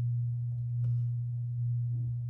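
A steady low hum with no breaks, with a faint rustle of damp play sand being pulled apart by fingers about a second in.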